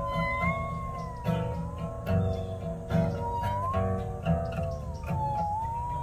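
Musical saw playing a single high, wavering melody line with vibrato, sliding slowly up and down in pitch, over strummed guitar chords.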